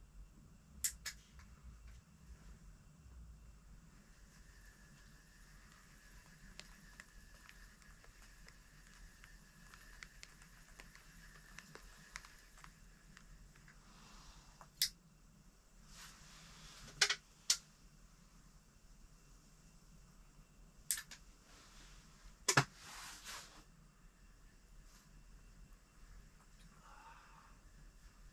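Quiet shelter with a low steady hum, broken by a handful of short sharp clicks and two or three brief rustles, the loudest clicks a little over halfway through.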